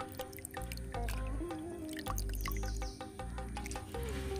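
Background music with a steady beat, over drips and small splashes of water as a wet cloth is squeezed out over a small cup.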